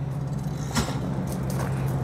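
Onan Marquis 5.5 kW RV generator running with a steady, even hum. A single crunch of a footstep on gravel comes just under a second in.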